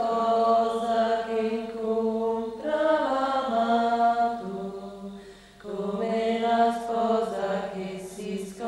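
Women's voices singing a slow religious chant in long held phrases, with a brief breath pause about five seconds in.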